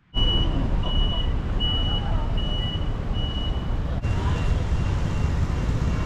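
Busy city street ambience: a heavy low rumble of traffic. Over it, a short high electronic beep repeats evenly, a little more than once a second, about five times in the first three and a half seconds, then gives way to a fainter steady tone.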